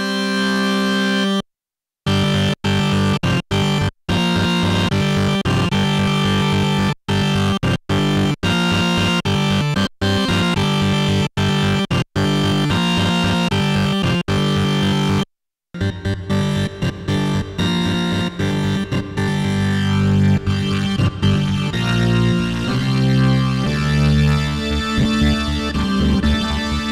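Yamaha reface YC combo organ on its Farfisa voice with a little distortion, played in rapid repeated staccato chords that break off completely twice. The second half turns to more held, moving chords.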